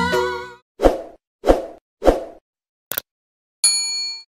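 Background music fading out, then three quick whoosh sound effects about half a second apart, a short click, and a ringing bell-like ding near the end: the sound effects of a subscribe-and-notification-bell reminder animation.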